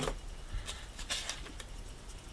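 Quiet room with a few faint, light clicks and rustles of hand handling on a wooden table.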